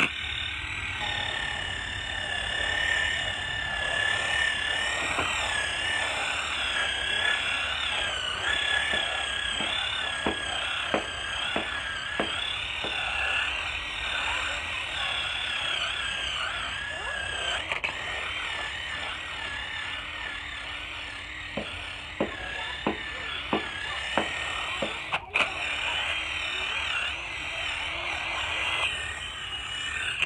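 Cordless drill spinning a brush attachment against a fabric couch cushion, scrubbing the upholstery; the motor whines steadily with a slightly wavering pitch as the load on the brush changes. Scattered short clicks sound through the scrubbing.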